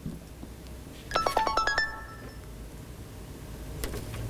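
A mobile phone tone: a quick run of about seven short electronic notes about a second in, lasting under a second.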